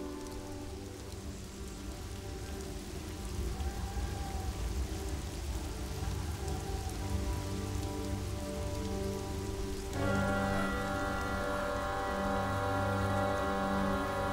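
Steady rushing of a waterfall under soft background music. About ten seconds in, the music swells with sustained, held tones.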